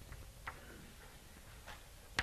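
Chalk tapping on a blackboard during writing: a few faint, sharp taps, the clearest about half a second in.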